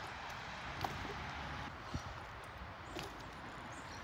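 Faint, steady outdoor background noise with a few soft clicks, one roughly each second from about a second in.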